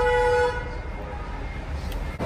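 A single short vehicle horn toot at the start, one steady tone lasting about half a second, followed by low street and shop background noise.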